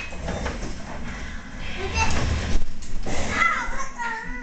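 Bumps and knocks on a wooden floor, then a child's voice rising into a wavering, crying wail near the end.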